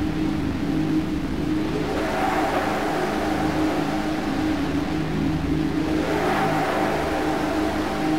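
Instrumental djent metal: distorted electric guitar riffs with a dense, rapidly pulsing low end, a brighter layer swelling in about two seconds in and again about six seconds in.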